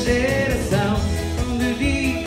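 Button accordion playing a lively melody in an instrumental break of a Portuguese dance-hall (pimba) song, over a steady low beat.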